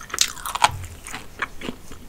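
Close-miked chewing of crispy Popeyes fried chicken, a run of short crunches from the fried breading, loudest near the start.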